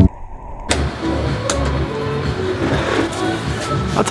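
Background music cuts off abruptly at the start. After a brief lull, a steady motor vehicle engine noise with a low hum runs in the background.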